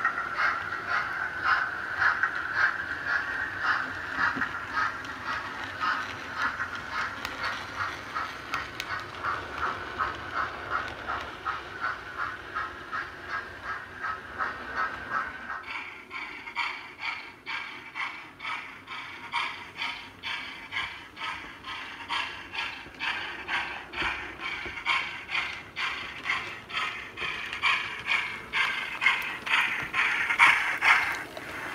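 Model railway train running on the layout, a steady rhythm of beats about two a second; about halfway through the sound turns higher and sharper.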